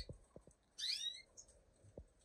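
A caged finch gives one brief call of quick sweeping high notes about a second in.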